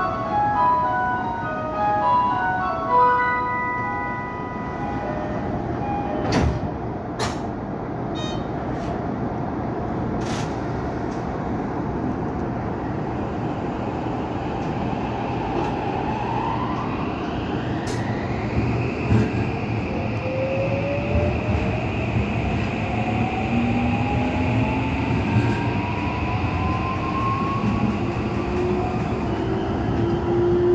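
An electronic chime melody plays for the first few seconds, followed by several sharp clunks. Then the Toei 5500 series subway train's inverter-driven traction motors start a rising whine, several tones climbing steadily in pitch over the running rumble as the train pulls out and accelerates.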